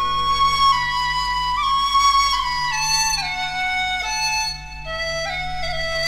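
Instrumental introduction of a Chinese folk-style pop song: a flute plays a melody of held notes that rises briefly and then steps gradually downward over a steady low accompaniment.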